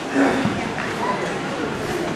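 A short, loud shout from a voice about a fraction of a second in, over chatter from a crowd in a large hall.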